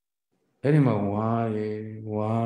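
A Buddhist monk's voice, after about half a second of silence, intoning one long drawn-out syllable at a steady low pitch in a chant-like delivery.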